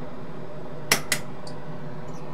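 Two sharp clicks about a quarter of a second apart, a second in, as a cable tie is removed from a capacitor on a circuit board. Under them runs the steady hum of a small fume-extractor fan.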